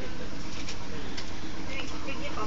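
Indistinct voices over a steady background hiss and rumble.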